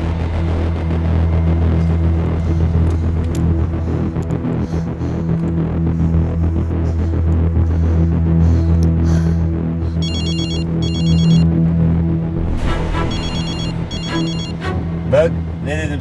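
A low, steady, brooding music drone, joined from about ten seconds in by a mobile phone ringing: a trilling electronic ring in short bursts that repeat several times.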